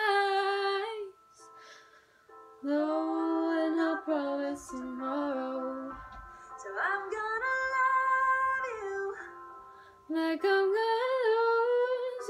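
Female voices singing a slow song in long held phrases, with short pauses between them: a woman singing along live with the recorded female singer of a TikTok duet clip.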